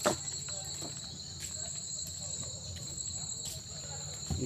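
A steady, high-pitched insect chorus that holds two constant tones, with one sharp click just after the start.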